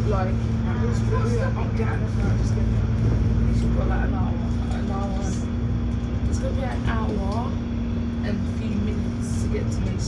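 VDL DB300 double-decker bus on the move, heard from inside the upper deck: a steady low engine and drivetrain drone with a held hum that stops just before the end.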